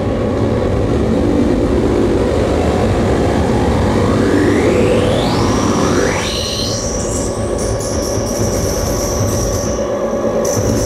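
Harsh noise electronics played through effects pedals: a loud, dense wall of rumbling noise with pitched tones sweeping upward over several seconds, then settling into a steady high whine with choppy, stuttering highs in the second half.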